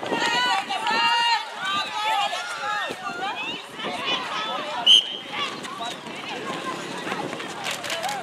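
Players and spectators calling and shouting during a netball game. About five seconds in comes one short, sharp whistle blast, typical of an umpire's whistle.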